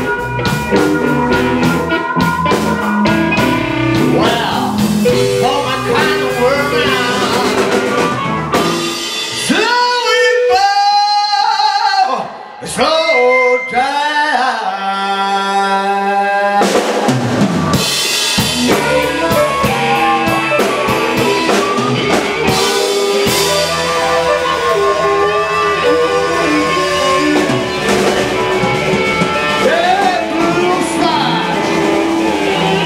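Live blues band playing: resonator guitar, harmonica, drum kit and bass guitar, with a singer. Around the middle the band drops out for several seconds while a single instrument plays bending notes, then holds a steady note, before the full band comes back in.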